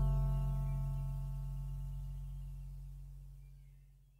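The last guitar chord of a song ringing out and slowly fading away, dying to silence near the end.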